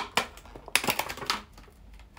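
Thin plastic food container of dates being opened and handled: a sharp click, then a run of crackling plastic clicks about a second in.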